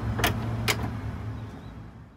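Steady low hum of motor traffic, with two sharp clicks about half a second apart in the first second; the sound fades away in the second half.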